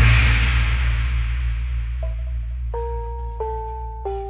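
Live band starting a song intro: a crash over a sustained deep bass note, then about two seconds in a keyboard begins a slow melody of held, bell-like notes.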